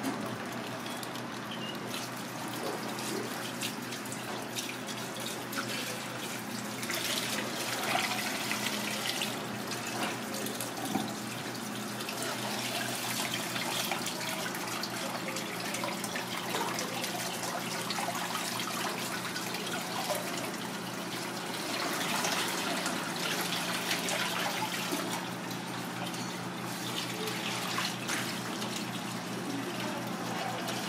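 Kitchen tap running into a stainless steel sink and a pot while clusters of octopus eggs are rinsed by hand under the stream, the water splashing over hands and eggs. The splashing swells louder twice, about a quarter of the way in and again about three quarters in.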